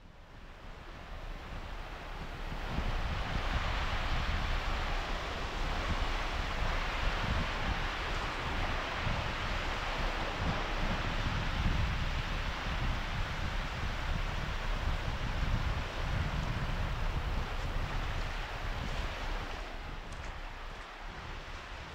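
Small surf washing onto a sandy beach, with wind buffeting the microphone in a low rumble; it fades in over the first few seconds and then holds steady.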